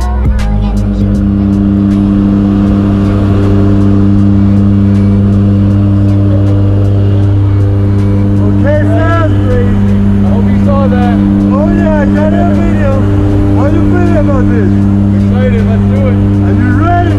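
Turboprop jump plane's engine and propeller drone heard inside the cabin while climbing out: a loud, steady hum with even overtones. Voices talk over it from about eight seconds in.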